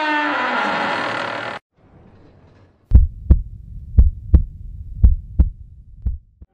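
A falling, multi-pitched drone cuts off abruptly about a second and a half in. After a short pause comes a heartbeat sound effect: three low lub-dub double beats, about one a second.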